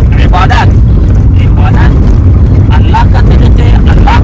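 Loud, steady low rumble of a moving car's engine and road noise inside its packed cabin, with men's voices talking over it.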